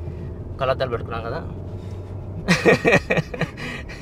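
A man's voice in a moving car, with a louder burst of voice about two and a half seconds in, over the steady low drone of the Mahindra Scorpio-N's cabin while driving.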